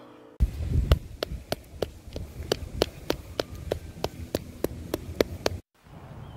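Sharp, evenly spaced ticking or tapping, about three a second, over a low rumble; it cuts off suddenly near the end.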